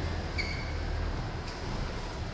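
Steady low hum of room noise, with a brief high squeak about half a second in.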